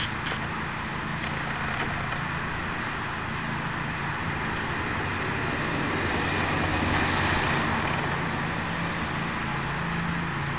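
Road traffic on a residential street: steady road noise with a car passing, growing louder to a peak about seven seconds in and then easing off.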